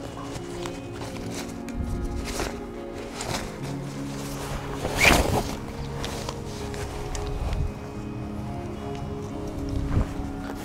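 Background music with held notes, over the rustling and clatter of a folding tailgating chair being pulled out of its fabric carry bag and opened, with the loudest handling noise about five seconds in.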